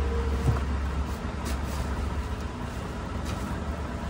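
Low, steady engine-like rumble, as from a motor vehicle nearby, easing after about a second. A light knock comes about half a second in, and there are faint scrapes and rustles as a metal snake hook probes a sack and wrappers under a shop counter.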